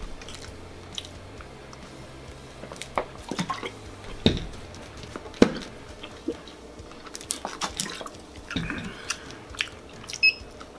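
Close mouth noises of a man eating and drinking: chewing and swallowing, and gulps from a plastic drink bottle, heard as scattered sharp clicks and smacks.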